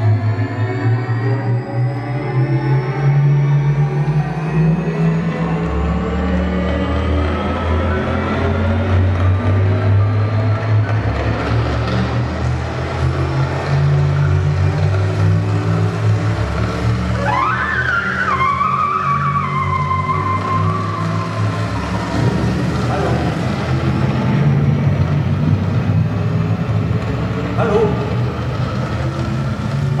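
Electronic soundscape: a dense, sustained low drone with slowly rising glides over the first several seconds. About seventeen seconds in, a high squealing tone sweeps up, falls back and holds for a few seconds.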